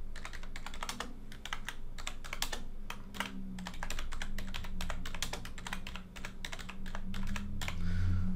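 Typing on a computer keyboard: a fast, irregular run of key clicks, several a second, as a line of text is typed.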